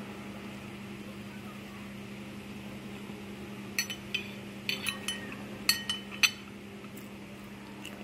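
Metal fork clinking against a ceramic plate: a cluster of sharp, ringing clinks between about four and six seconds in, over a steady low hum.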